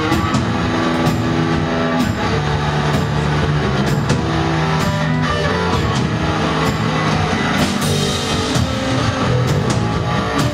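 Rock band playing live: electric guitar over a drum kit, with sustained low guitar notes and regular drum and cymbal hits.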